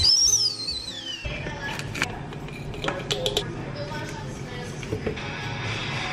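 Stovetop whistling kettle taken off the heat: its high steady whistle jumps up, then glides down in pitch and dies away within about a second. Background music follows.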